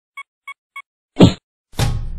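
Produced intro sound effects: three short, evenly spaced electronic beeps, then two heavy hits. The first hit, about a second in, is the loudest; the second leaves a low rumble trailing after it.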